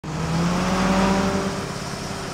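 Engine sound effect for a school bus driving in: a steady engine note that eases off about a second and a half in.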